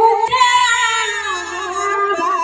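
Women singing a Bihu folk song together, holding long notes that waver slightly in pitch.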